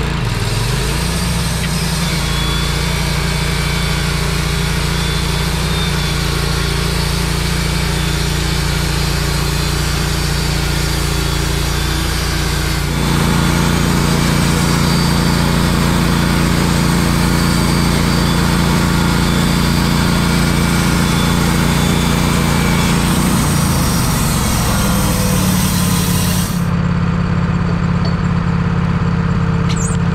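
Kohler gas engine of a Wood-Mizer LT15 portable band sawmill running steadily while the band blade saws through a pine log. About halfway through the engine gets louder and deeper as it takes the load of the cut, and the high hiss of the cut drops away a few seconds before the end while the engine runs on.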